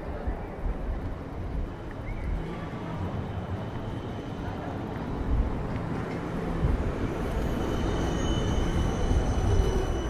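An electric city tram rolling past close by: a low rumble that grows louder, joined from about seven seconds in by a steady high whine.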